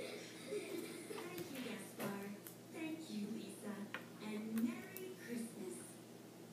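Faint voices in the background, with several light clicks and rustles from hands handling tape at the base of a craft-stick model.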